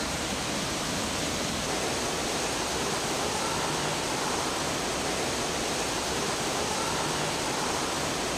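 Dense artificial rain pouring steadily from a ceiling grid of valve-controlled nozzles onto a grated floor: an even, unbroken hiss of falling water.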